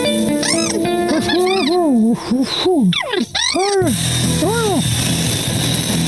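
Animated cartoon soundtrack played over a video call: music with quick, sliding, arching vocal-like cartoon sounds. About four seconds in it cuts to a steady hissing noise with a low hum, and a few more sliding sounds follow.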